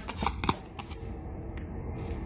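A deck of tarot cards being handled: a few quick clicks in the first half second, then only faint room hiss.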